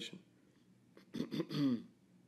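A man clearing his throat once, a short rasping burst about a second in.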